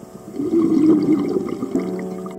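Scuba regulator exhaust bubbles gurgling underwater as a diver breathes out, a single exhalation from about half a second in until shortly before the end.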